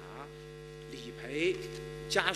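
Steady electrical mains hum, with faint speech showing through it about a second and a half in.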